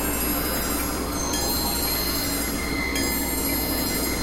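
Experimental electronic noise music: a dense, steady drone of noise with several thin, high held tones and chime-like ringing over it, the high tones shifting a little partway through.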